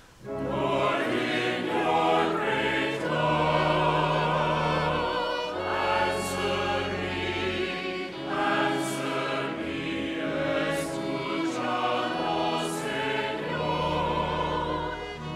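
Responsorial psalm sung by two women cantors in harmony, the congregation joining the refrain so it sounds like a choir, over held low bass notes. The singing begins just after a short hush at the start and runs as continuous phrases.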